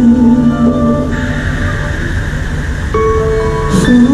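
Live pop music played over an outdoor concert sound system, recorded from within the crowd. It is an instrumental stretch without singing: a held low note, then new sustained notes come in about three seconds in.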